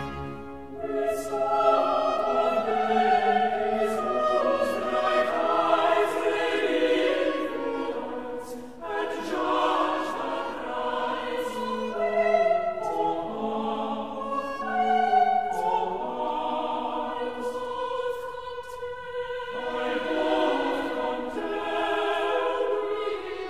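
Baroque choir singing with a light period-instrument orchestra: several voices sustaining and moving lines together, with crisp consonants throughout.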